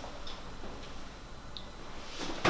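Quiet room tone with a few faint, light ticks at irregular intervals.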